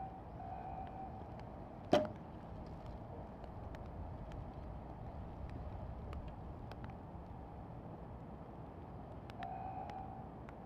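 Quiet outdoor background noise with one sharp click about two seconds in. Brief faint steady tones come near the start and near the end.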